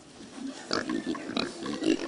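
Domestic pigs grunting, a string of short irregular calls that starts about half a second in.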